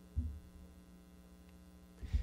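Steady electrical mains hum, with a single short low thump just after the start.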